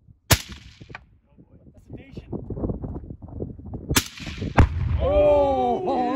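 Sharp report of a PCP air rifle about a third of a second in, then about four seconds in another shot followed half a second later by the heavy boom of an exploding target, the loudest sound here. A person's long shout follows the blast.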